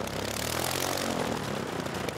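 Propeller aircraft engine running steadily, as an early pusher biplane flies past.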